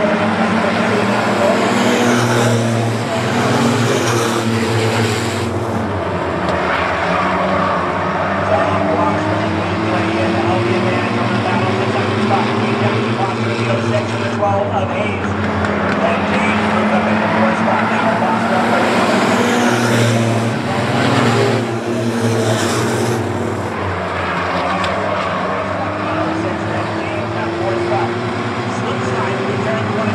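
A pack of compact-sedan race cars running laps on a short oval, their engines revving and easing through the turns. Louder pass-bys come a few seconds in and again about twenty seconds in.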